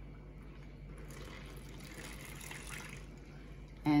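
Water poured from a glass jar into a plastic zip-top bag, a faint pour that starts about a second in and stops just before the end.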